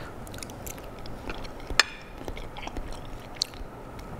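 Small scrapes and clicks of a metal fork on a plate as a piece of pancake is cut and lifted, with one sharp click a little under two seconds in, and soft chewing of a mouthful of pancake topped with honey-crusted almonds.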